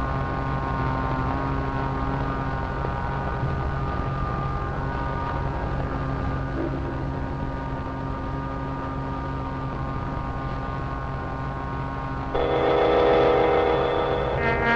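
Cartoon sound effect of the giant magnetic telescope powering: a steady electric drone of several held tones over a low hum. About twelve seconds in, a louder, fuller tone cuts in suddenly as the magnet's beams shoot skyward.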